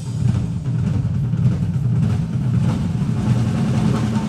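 Several drum kits played together live, a dense, continuous low rumble of bass drums and low drums with few sharp strikes or cymbal hits.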